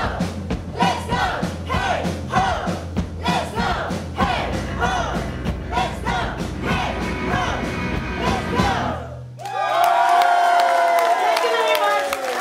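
Live pop-punk band of electric guitar, bass, drums and shouted vocals, the vocals in short phrases about twice a second, playing the final bars of a song. The band stops abruptly about nine seconds in. The crowd breaks into loud cheering and high whoops.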